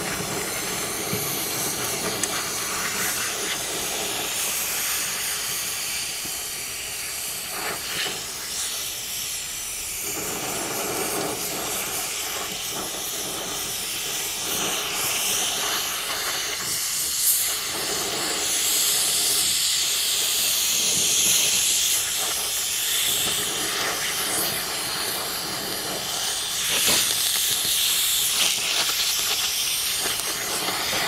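Gas torch flame hissing steadily against a cast-iron bearing cap as it melts the old babbitt lining out of a steam engine main bearing.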